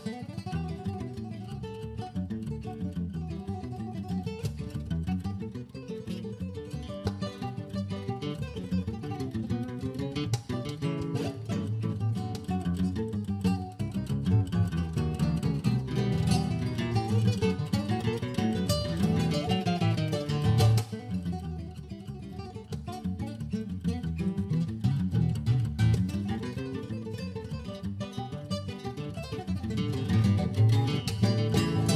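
Two nylon-string classical guitars, one a seven-string, playing an instrumental frevo duet in dense, quick runs of plucked notes. The playing eases slightly in loudness a little past two-thirds of the way through.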